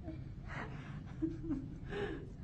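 Soft breathy laughs and a brief murmured voice from women, over a low steady room hum.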